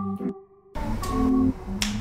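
Background music with held notes cuts out briefly about a third of a second in, then resumes; a single sharp snap-like click sounds just before the end.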